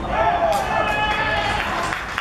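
Men shouting and cheering as a goal is scored, a long raised shout starting just after the ball goes in and dying away near the end.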